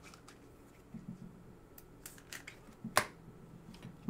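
2018 Panini Prizm football cards being handled and flipped through: soft slides and small clicks of the glossy cards against each other, with one sharper snap about three seconds in.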